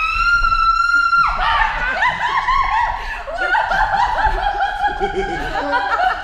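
A long, high-pitched vocal squeal held for about a second, then breaking into continuous loud laughter from people in a large gym.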